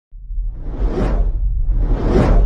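Whoosh sound effects from a logo-intro animation: a swoosh that swells and fades about a second in, then a second one building near the end, over a deep steady rumble.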